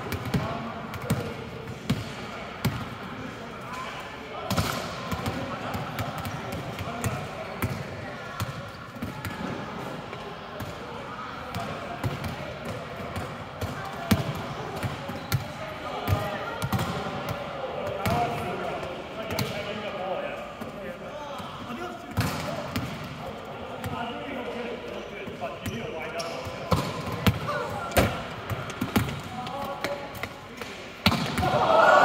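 Volleyballs being hit and bouncing on a sports-hall floor: irregular sharp smacks and thuds, some louder than others, over the chatter of players in a large hall.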